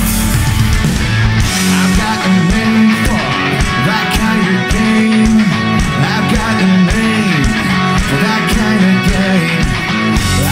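Rock band playing live at full volume: electric guitars, keytar, bass and drums.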